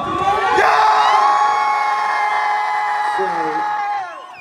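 Concert crowd cheering and whooping, swelling about half a second in and dropping away sharply near the end.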